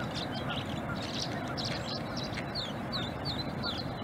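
Tree swallows twittering: many short, high chirps overlapping in quick succession, over a steady low rush of background noise.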